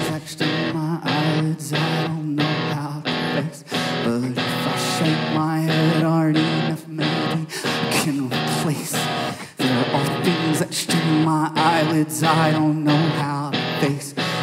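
Live indie rock band in a quieter passage led by electric guitar, starting as the loud full-band section drops away. The guitar plays a repeating figure with a steady pulse, over held bass notes.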